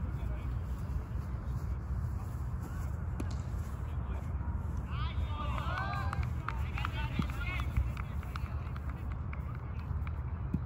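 Distant voices of cricket players calling out across an open field, clearest from about halfway in, over a steady low rumble.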